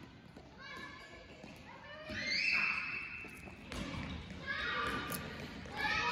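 Children calling and shouting at play in a gymnasium, their voices echoing in the big hall, with the loudest a long high shout about two seconds in. Faint footfalls of running children on the hardwood floor.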